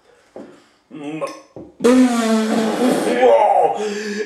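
A man's drawn-out, breathy vocal groan starting about two seconds in, after a few short, faint breaths or small knocks: a reaction to the burning heat of the chilli sauce.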